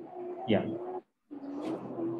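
A man's voice saying a short "yeah", with held low hum-like tones around it, heard through a video-call connection that cuts to silence for a moment about a second in.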